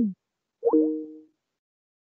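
Microsoft Teams call-ending chime as the call is left: the tail of a short falling electronic tone, then about half a second later a second tone that swoops up and holds two steady notes briefly before fading.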